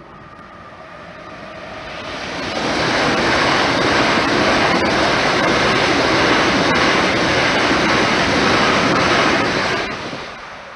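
An electric multiple-unit passenger train passes at speed across the level crossing, its wheels and rails rushing. The noise builds as the train approaches, stays loud for about six seconds, and falls away suddenly near the end as the last carriage clears.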